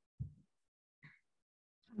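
Near silence between speakers on a video call, broken by one short, low thump shortly after the start and a faint tick about a second in.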